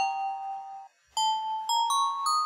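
A looped phrase of electronic bell-like notes from the slicer patch, stepping upward in pitch about five notes a second. The phrase breaks off just before a second in and starts over a moment later.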